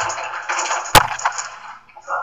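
A single sharp click or knock about a second in, over a faint hiss.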